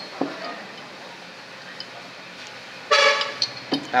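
A vehicle horn sounds once, briefly, about three seconds in: a steady, bright tone lasting about half a second, loud over an otherwise quiet background with a few faint ticks.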